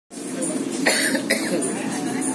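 A person coughs twice in quick succession, about a second in, over a steady low hum of room noise.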